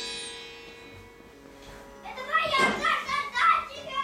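Sitar being played: a ringing note dies away, then about two seconds in a loud quick run of plucked notes with bending, sliding pitch.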